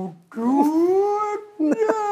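A woman's voice drawn out into two long, sliding vocal sounds, the second running on past the end, each rising and then slowly falling in pitch: a mock slow-motion voice.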